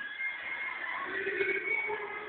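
Voices of a group of young people calling out and chattering, with one drawn-out call through the second half.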